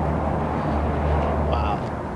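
Steady low outdoor rumble of city background noise, like distant traffic, with no distinct events.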